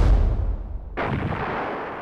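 Artillery field guns firing: the rumble of one shot dies away at the start, then another heavy shot goes off about a second in and rumbles away.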